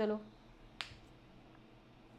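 A single sharp click a little under a second in, after a woman's voice finishes a word; the rest is quiet room tone.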